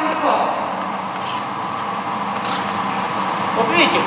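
Indistinct talking in a large, echoing sports hall. No distinct strike or impact sounds stand out.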